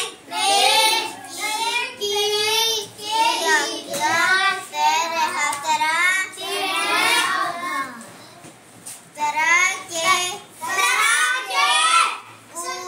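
A child singing a rhyme in phrases with short breaks between them, and a longer pause about eight seconds in.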